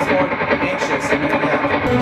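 Electric guitar, a white Stratocaster-style instrument, picking a melodic line at a steady rhythm of a few notes a second.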